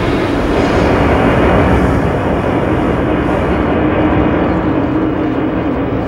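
A loud, steady low rumble with a faint held low tone running through it; the hiss on top dims away about halfway through.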